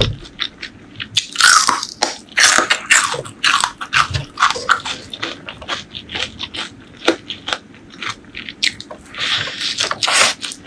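Close-miked mouth biting and chewing crunchy food: a quick run of crackling crunches throughout. The crunches are loudest between about one and a half and three seconds in, and again near the end as a mouthful of crisp golden strands goes in.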